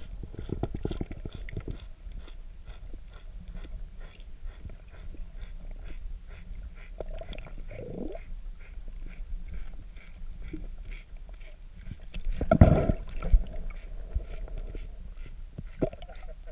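Underwater sound picked up by a camera beside a manatee: a steady low rumble with faint rapid clicking, a short sliding tone just before eight seconds, and a louder thump about twelve and a half seconds in.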